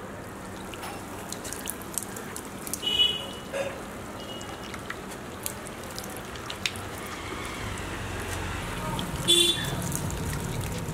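Water poured from a plastic mug splashing and trickling over stacked clay bricks, with scattered drips. Two brief high-pitched calls stand out, about three seconds in and near the end.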